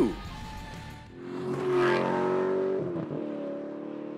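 A motor vehicle's engine swelling to its loudest about two seconds in, then dropping in pitch and fading away, like a vehicle passing by.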